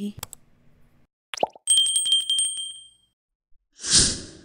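Subscribe-button animation sound effect: a couple of quick clicks, a rising pop, then a bell ringing rapidly for about a second. Near the end comes a short, loud rush of noise.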